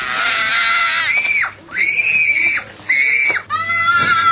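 A small child screaming in a tantrum: long, high-pitched held shrieks, four of them with short gasps for breath between.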